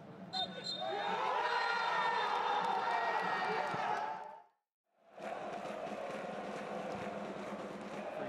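Several men shouting and cheering together in an almost empty football stadium, with a short steady whistle near the start. After a brief cut to silence about halfway through, the steady noise of a large stadium crowd.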